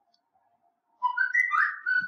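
A short whistle-like sound of a few sliding, upward-stepping notes, starting about a second in and lasting about a second.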